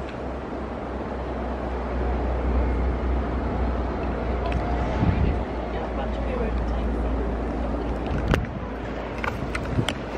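Train running along the track: a steady low rumble, with a sharp knock a little after eight seconds.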